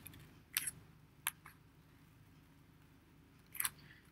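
Scissors snipping through construction paper folded into four layers: a few short, sharp snips, with a quiet gap of about two seconds before the last one.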